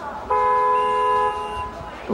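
Wrestling arena's electronic end-of-period horn, heard through a television's speaker: one steady blast of several fixed tones lasting about a second and a half, marking the end of the three-minute period.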